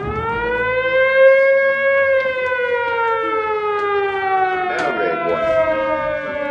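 Air-raid siren wailing: it winds up in pitch right at the start, holds, then slowly winds down.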